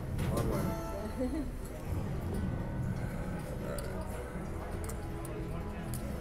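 Casino ambience: background voices and electronic machine chimes and tones, with a few sharp clicks of casino chips being handled on the table.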